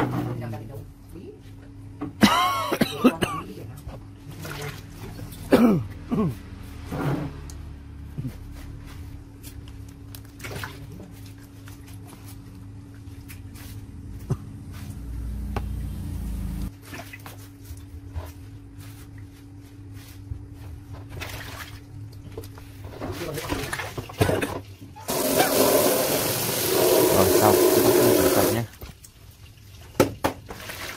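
A stream of running water splashes over squid in a bamboo basket and into a plastic basin for about three and a half seconds near the end, then stops. Earlier come a few brief, loud voice-like sounds.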